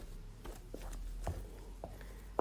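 Wooden spoon stirring thick cocoyam paste in a metal pot, faint, with a few soft knocks of the spoon against the pot.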